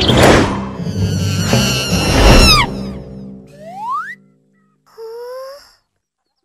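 Cartoon soundtrack sound effects with music: a loud noisy blast with falling whistle-like tones for the first two and a half seconds, as a puff of smoke bursts out. It is followed by a single rising slide-whistle-like glide about four seconds in and a short rising tone about five seconds in.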